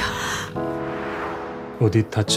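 TV drama score with long held notes, opening with a sharp, breathy gasp; a voice starts just at the end.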